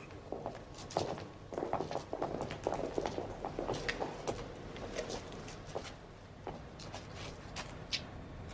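Footsteps on a hard floor, a run of short, uneven clicks and knocks.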